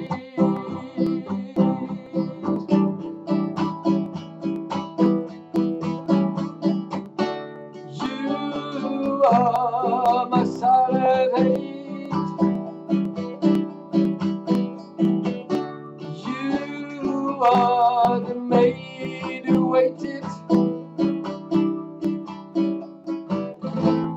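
Acoustic guitar strummed in a steady rhythm through an instrumental break, with a voice singing a wavering line over it about nine seconds in and again about seventeen seconds in.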